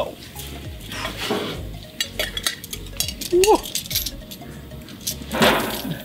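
Light metal clicks and clinks of tongs handling food on a gas grill's grate, with a short squeak about three and a half seconds in and a brief louder rush of noise near the end.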